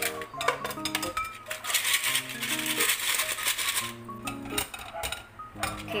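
Light background music over scallop shells clattering and clinking against one another and a stainless-steel mesh strainer as they drain after a boiling-water rinse. A rushing hiss runs for a couple of seconds midway.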